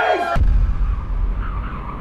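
The tail of a group shout cuts off about a third of a second in, and a deep boom sound effect takes over, fading slowly.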